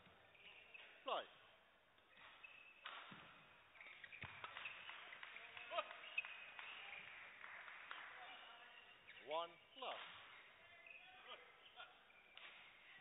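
Badminton rally heard faintly in a large hall: a few sharp racket hits on the shuttlecock between about 3 and 6 seconds in, with shoes squeaking on the court. A short pitched squeak or call follows just after 9 seconds.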